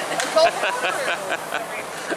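A man laughing, a quick run of short laughs that fades after about a second and a half.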